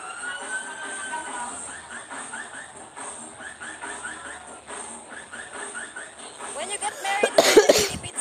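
Hall crowd chatter with faint music behind, then a loud burst of voice close to the microphone, like a cough or exclamation, near the end.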